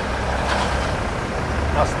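Steady roadside traffic noise with the low rumble of heavy trucks' engines running nearby.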